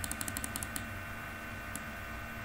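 A quick run of small plastic clicks, about a dozen within the first second, from scrolling and paging through a document on a computer, followed by a faint steady background hum.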